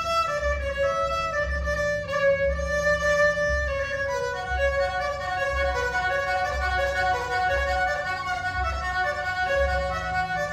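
Solo kamancheh, the Iranian bowed spiked fiddle, played with a horsehair bow: a singing melody of held, gliding notes that turns into a quicker run of shorter notes about four seconds in.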